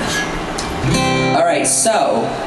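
Acoustic guitar strummed about a second in, the chord left ringing.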